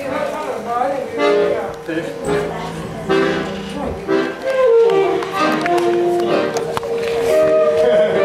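Live band music with voices singing over it, held notes and sliding pitches throughout.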